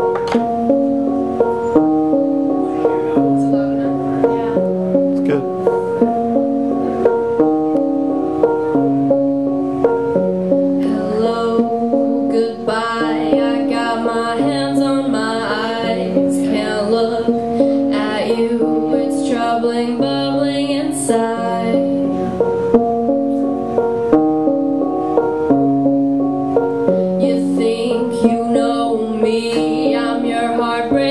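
Electric keyboard playing a repeating pattern of held chords and notes, joined about eleven seconds in by a woman singing.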